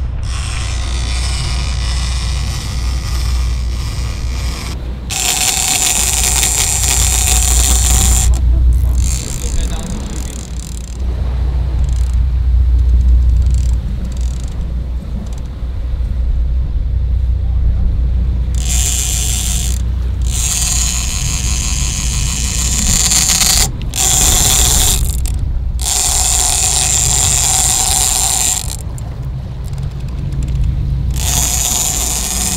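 Big-game fishing reel running in several bursts of one to three seconds that stop suddenly, over a steady low rumble.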